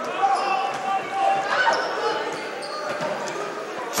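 A basketball being dribbled on a hardwood gym floor over a steady murmur of crowd voices in a large, echoing gymnasium.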